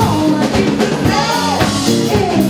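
Live band playing a song: singing over electric guitar, bass guitar and drum kit, with regular drum hits and sung notes gliding up and down.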